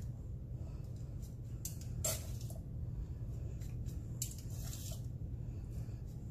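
Shredded cabbage coleslaw rustling softly as metal tongs lift it into a bowl, with brief, faint bursts about two seconds in and again past four seconds, over a steady low hum.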